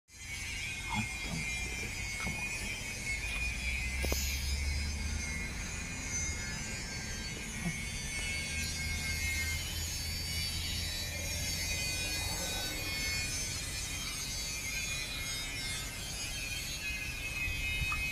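A Boeing 737-800 jet airliner passing high overhead, heard from the ground as a steady, distant low rumble that swells and eases. A steady high-pitched layer of sound runs above it.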